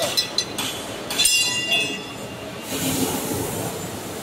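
A steel roller on a roll forming machine is shifted along its steel shaft: a few light metal clicks, then, about a second in, a loud steel-on-steel scrape with a high ringing that fades within a second, followed by a softer rasp.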